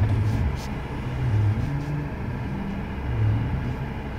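Bentley Continental GT Speed's W12 engine running at low revs as the car creeps backwards, heard from inside the cabin as a steady low rumble.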